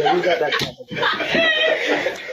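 Men's voices talking and laughing, with one sharp smack about half a second in.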